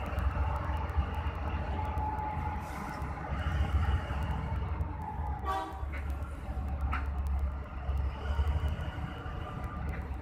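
Mining haul truck's large diesel engine running with a deep, steady rumble as the truck drives slowly past. About halfway through comes a short horn toot.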